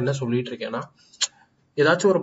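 Talking, then a short pause with a single sharp click, like a computer mouse click, before the talking starts again.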